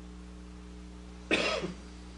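A single short cough from a person, a little past halfway through, over a steady low electrical hum.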